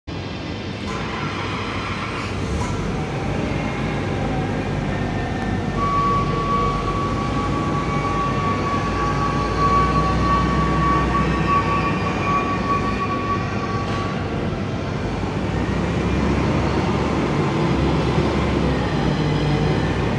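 2017 Komatsu FG50ATU-10 LPG forklift's engine running as the truck drives across a concrete floor, a steady low rumble. A single steady high whine rises above it for several seconds in the middle.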